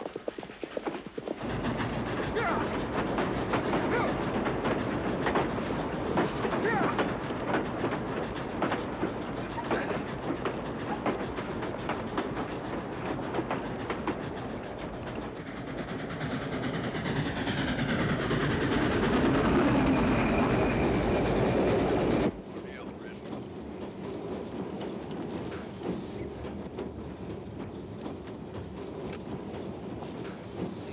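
Steam train running, loud with dense rapid clatter and a falling tone about two-thirds of the way through. It cuts off suddenly to a quieter, steady rumble as heard inside a moving railway carriage.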